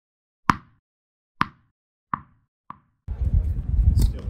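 A tennis ball bouncing four times, the bounces coming closer together and quieter as it settles. Near the end, a loud, low outdoor rumble cuts in suddenly.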